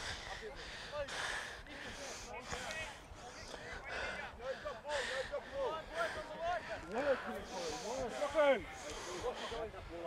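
Faint, overlapping voices of rugby league players calling to each other across the field as they gather for a scrum, with brief puffs of noise on a close microphone about once a second.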